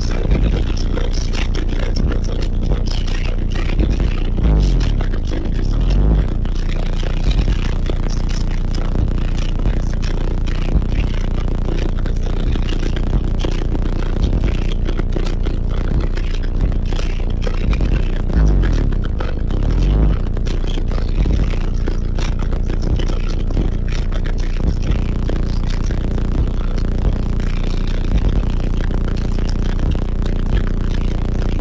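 Very loud bass-heavy music played through a 100,000-watt car audio system of large subwoofers, heard inside the vehicle's cabin. Deep bass notes sweep down and back up in pitch a couple of times.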